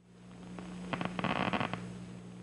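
Action potentials of a single neuron in a cat's primary visual cortex, picked up by a microelectrode and played through a loudspeaker: a dense burst of rapid clicking that builds from about half a second in and is strongest near a second and a half, then stops. Under it runs a steady electrical hum.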